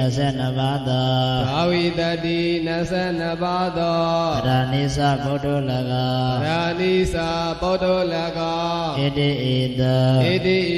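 A Buddhist monk chanting a Pāli text in a slow melodic recitation into a microphone: one male voice holding long notes and gliding to a new pitch every two seconds or so.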